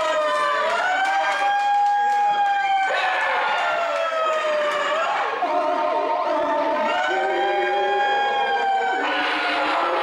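Wordless, siren-like wailing voiced through a handheld megaphone: long held notes that slide slowly down in pitch and jump back up several times. A second, lower tone runs alongside for a few seconds in the middle.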